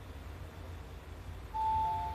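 Fujitec XIOR elevator car travelling with a low steady hum, then its arrival chime sounds about one and a half seconds in: a higher tone followed by a lower one. The chime signals that the car is arriving at its floor.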